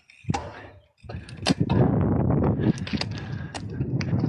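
Gravel bike rolling over cracked, patched asphalt: a steady tyre and road rumble with sharp knocks and rattles as it hits bumps, starting about a second in after a near-silent moment.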